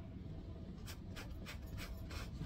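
Paintbrush scrubbing on a stretched canvas: a run of short, quick strokes, about four a second, starting about a second in, over a low steady room hum.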